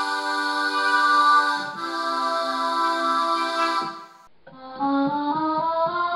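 Melloman, a homemade Mellotron-style keyboard whose notes are played back from cassette tapes in Walkman players, sounding held chords that change once about two seconds in. After a brief break about four seconds in, a duller tape sound plays a rising line of notes.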